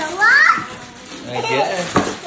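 Children's excited high-pitched voices, squealing and calling out without clear words, with one short sharp sound just before the end.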